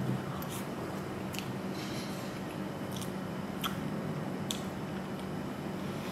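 A person chewing a mouthful of soft cheesecake: faint, scattered mouth clicks about every second over a steady low hum.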